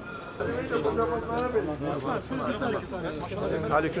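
A man chanting a prayer in Turkish in a melodic, wavering recitation voice, beginning about half a second in.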